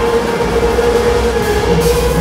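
Free, electronics-heavy jazz: a trumpet holds one long steady note over a low electronic drone and a hiss of noise textures, with no drum beat.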